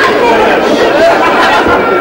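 Many people talking at once in a room, their voices overlapping into a steady chatter.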